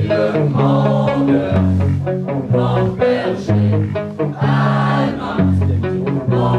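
Live rock band playing loud, with a drum kit and cymbals driving a steady beat under a low bass line that changes notes in time with it.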